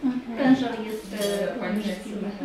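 Clinking of small hard objects, with a couple of sharp clinks in the second half, over a woman talking.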